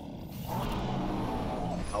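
Low mechanical rumble with a faint droning tone, a sound effect from an animated episode's soundtrack, starting about half a second in.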